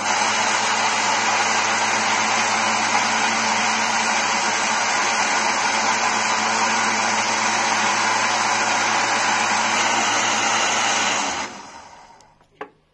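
Electric countertop blender running at a steady speed, blending a liquid mix of melted margarine, salt and oil for bread dough. Near the end it is switched off and the motor winds down.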